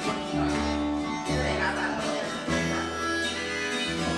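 Acoustic guitar and acoustic bass guitar playing an instrumental passage of a folk-country song, with no vocals; the bass notes change roughly every second.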